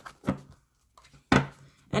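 Tarot cards being shuffled by hand: two short, sharp card noises, the louder about 1.3 seconds in.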